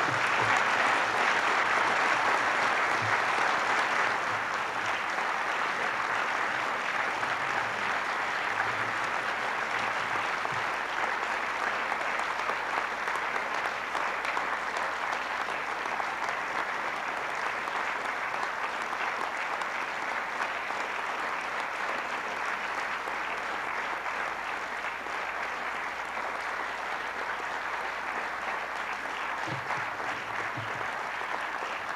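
Large audience applauding steadily and at length, loudest in the first few seconds and easing off only slightly afterwards.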